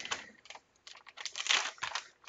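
Crinkling and clicking of a plastic baking soda pouch being handled, a run of short crackles that grows loudest about one and a half seconds in.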